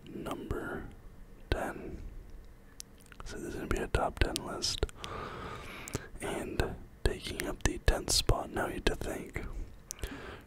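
Close whispered speech in short phrases, with brief clicks between them.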